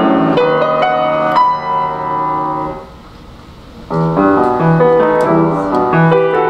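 Grand piano playing a classical piece, with fast runs of notes over held chords. About halfway through, a chord rings and fades into a pause of about a second. Then the playing starts again.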